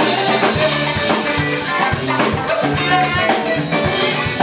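Live rock band playing, with electric guitars, bass guitar and a drum kit keeping a steady beat.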